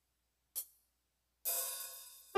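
Opening of a recorded drum backing track: a single short hi-hat tick, then about a second and a half in a cymbal crash that rings and slowly fades.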